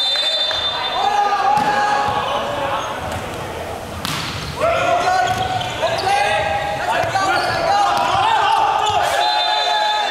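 Volleyball play in a gymnasium: players shouting and calling, with a few sharp smacks of the ball being served and hit, echoing in the hall.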